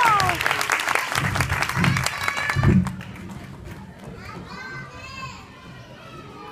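Audience applause with dense clapping that dies down about halfway through, followed by children's voices chattering more softly.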